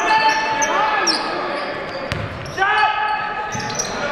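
Basketball sneakers squeaking on the hardwood gym floor in repeated short, rising squeals, with voices from players and crowd. There is a single sharp knock about two seconds in, and a burst of squeaks a little later.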